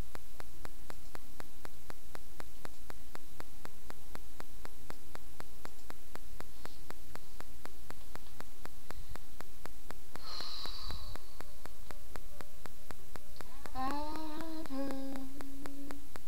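A woman humming softly under steady microphone hiss, holding low notes. Near the end the humming grows louder and moves in pitch, like a tune being tried out.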